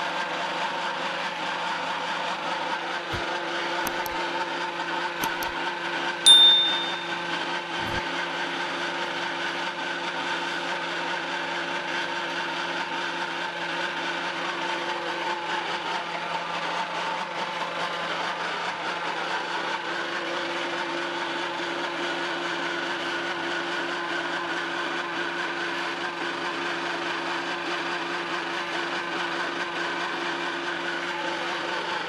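Electric-motor-driven feed pellet mill running steadily under load, pressing out feed pellets, with a belt drive and an even, multi-toned hum. About six seconds in, a single sharp metallic clink rings briefly over it, with a few faint clicks around it.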